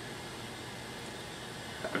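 Steady background hiss with a faint low hum: room tone, with no distinct event.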